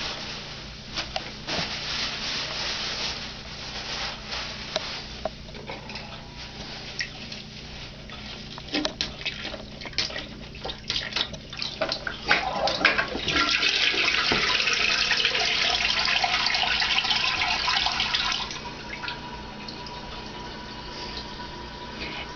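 Toilet paper rustling and crinkling as it is handled into the bowl. About twelve seconds in, the toilet is flushed with its bowl stuffed with paper, which is meant to clog it: a loud rush of water for about six seconds, then a quieter steady hiss with a faint tone.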